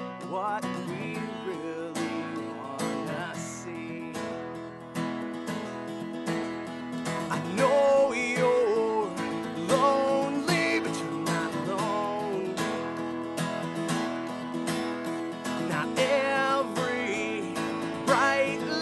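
A man singing a folk song, accompanying himself on a strummed acoustic guitar; the singing grows louder in the second half.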